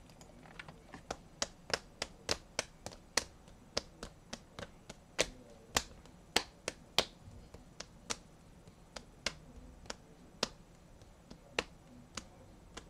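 Typing on a computer keyboard: separate sharp key clicks at an uneven pace, two or three a second, thinning out near the end.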